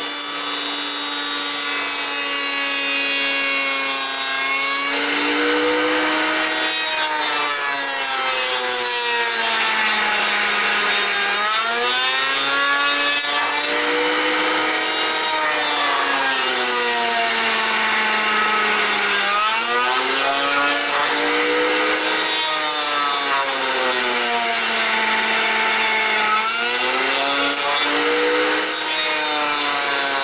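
Table-mounted router with a large-diameter tongue-and-groove bit, running steadily and planing a wood blank. Its pitch sags and recovers every few seconds as the cutter bites in and frees up on each pass, over the hiss of cutting.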